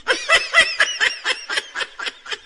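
High-pitched, stifled giggling: a rapid run of short laughing bursts, about five a second.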